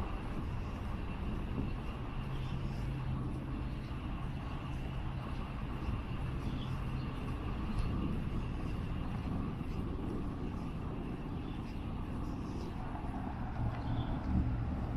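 Outdoor town street ambience: a steady low rumble, with a low hum standing out for several seconds in the middle.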